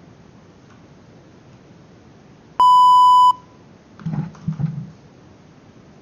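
A single loud electronic beep, one steady high-pitched tone held for under a second before cutting off, followed about a second later by a few soft low knocks.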